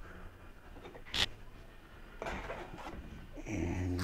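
Tile-setting handling sounds: a single sharp click about a second in, then a brief scrape of a trowel spreading thinset mortar onto the back of a small ceramic tile. A man's voice starts near the end.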